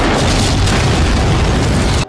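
A loud explosion: a sudden blast that carries on as a dense, loud noise, with music underneath, then cuts off abruptly at the end.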